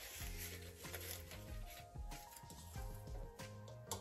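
Faint background music of soft held notes, with a few light clicks and taps of a metal measuring spoon against a glass spice jar.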